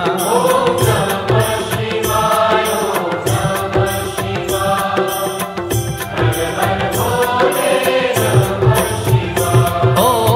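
Devotional Hindu mantra sung to music with a steady beat, the chanting voices carrying throughout.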